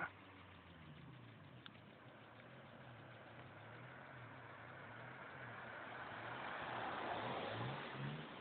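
Faint car engine running, growing louder over the second half and loudest near the end.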